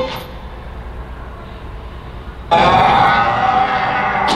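A projected video's soundtrack playing over room loudspeakers. It drops to a low hum between scenes, then cuts back in suddenly and loudly about two and a half seconds in.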